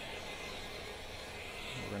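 Handheld electric heat gun running with a steady blowing noise as it warms vinyl wrap film.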